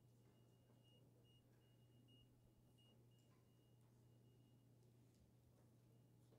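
Near silence: room tone with a faint steady low hum and a faint thin high tone that stops about five seconds in.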